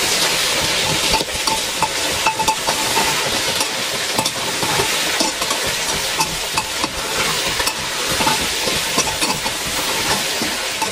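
Pieces of meat sizzling as they fry in a black pot, with a metal spatula stirring and scraping against the pot in frequent short clicks.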